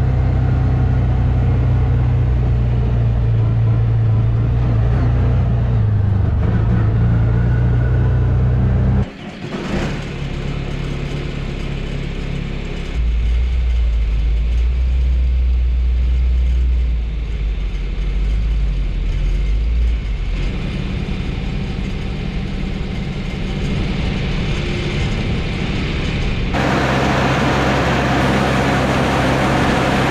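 Side-by-side UTV engine running steadily while driving, cutting off sharply about nine seconds in. Then a tractor engine runs a grain auger while a tandem truck is unloaded into it, with a louder hiss coming in near the end.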